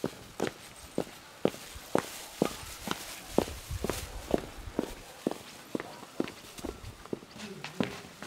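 Footsteps of a woman in heeled shoes walking at a steady pace on hard-packed dirt ground, about two steps a second.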